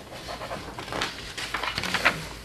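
Paper rustling as sheets of a document are handled and turned, in irregular swishes.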